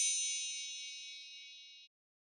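A sparkling chime sound effect: a cluster of high bell-like tones that rings and slowly fades, then cuts off suddenly just before the end.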